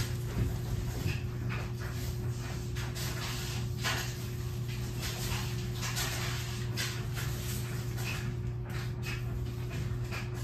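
Leaves and lemon blossom clusters being handled, with irregular soft rustles and light clicks, over a steady low electrical hum.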